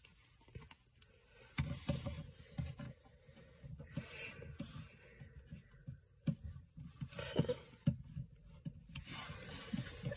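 Quiet handling noise from a plastic action figure and its web-shaped symbiote accessory being moved and fiddled with by hand: irregular soft knocks, taps and scrapes.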